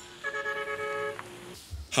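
A car horn held for about a second, one steady blare with no rise or fall in pitch, over faint road noise.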